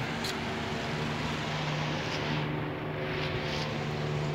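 Portable pulse-jet thermal fogging machine running steadily, a continuous low drone.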